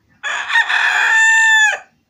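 A rooster crowing once, about a second and a half long: a rough start that settles into a long held note, then drops away at the end.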